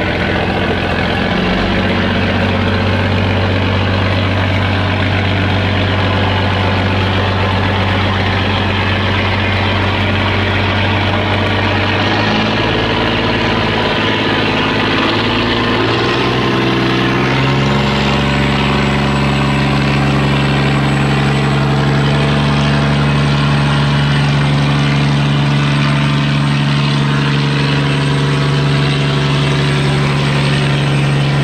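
Boat engines running steadily, a barge's among them. The engine note shifts about twelve seconds in and steps up in pitch at about seventeen seconds, as if an engine is opened up.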